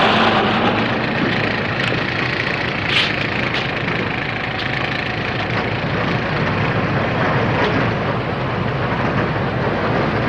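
Steady, loud, noisy rumble of vehicle engines and plant machinery in a gravel and concrete yard, with one sharp knock about three seconds in.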